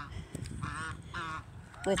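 Domestic goose honking twice in quick succession, two short, wavering calls about half a second apart.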